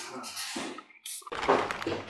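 A clear plastic drinking cup being picked up and raised to drink: a short burst of handling noise and clatter about a second and a half in, after a brief pause.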